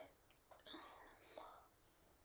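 Near silence, with a faint breathy voice sound, like a soft exhale or murmur, from about half a second to a second and a half in.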